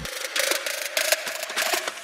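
Irregular mechanical clicking and ticking from a machine's hand-turned mechanism, several sharp clicks a second over a faint steady hum.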